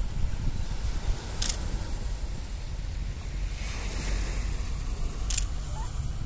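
Wind noise on the microphone over the wash of small waves breaking on a sandy shore, the surf swelling briefly about two-thirds of the way through. Two short sharp clicks, about a second and a half in and near the end.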